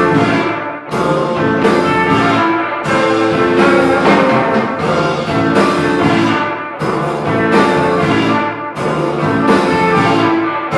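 A live rock band playing: electric guitar and electric bass holding sustained, ringing chords over a drum kit, with repeated cymbal crashes.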